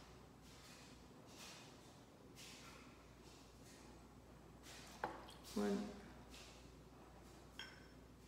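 Tequila poured from a glass bottle into a copper jigger: faint trickling in short spurts. A short voiced sound from the man a little past halfway, and a light metallic clink with a brief ring near the end.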